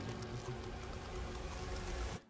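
Eerie ambient sound from an animated horror short: a steady low electrical hum, like fluorescent lights, under a constant crackling hiss.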